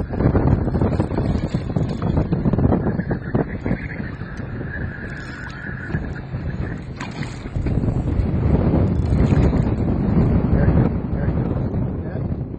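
Wind buffeting the microphone aboard a small boat on open water, a fluttering rumble that eases in the middle. A faint steady high tone sits under it for a few seconds partway through.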